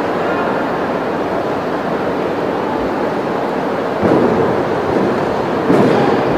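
Steady, echoing background din of a large indoor gymnastics arena, with two sudden louder swells about four seconds in and just before the end.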